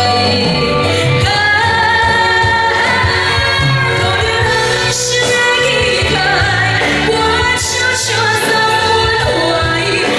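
A woman singing a pop song through a stage microphone with a live band backing her, amplified over a PA.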